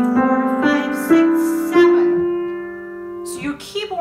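Piano notes played one at a time, stepping up the scale about twice a second, the last one held and left to fade: counting seven notes up from G to F, the seventh added on top of a G chord to make G7.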